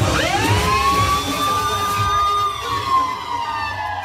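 A siren-like electronic tone in the live music: it rises quickly, holds high for about two seconds, then slowly falls. The bass beat drops out under it, and the full band and beat come back right after.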